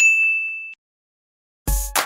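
A single bright chime sound effect, a bell-like ding that rings for under a second and cuts off sharply. Near the end a music track with a heavy beat starts.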